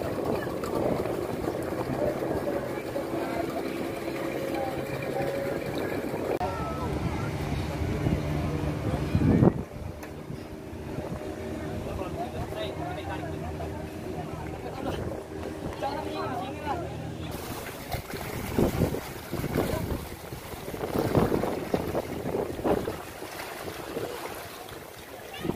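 A boat engine running steadily, with people talking. In the last several seconds the engine drops out, leaving voices and gusts of wind on the microphone.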